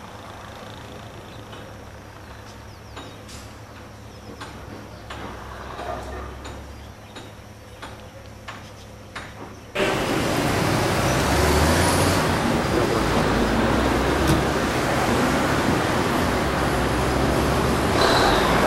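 Quiet outdoor ambience with a low hum and a few scattered clicks. About ten seconds in there is an abrupt jump to loud, steady street noise: passing traffic and vehicle engines under a broad rushing hiss.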